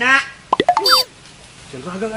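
A quick plop-like comic sound effect about half a second in: a handful of sharp clicks with fast rising and falling pitch glides, over in about half a second, between stretches of men talking.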